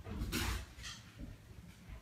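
A dog making a few short, soft noises as it goes to fetch an object, in the first second; after that only faint sound.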